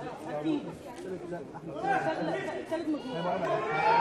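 Voices chattering in a large hall, several at once, getting louder toward the end.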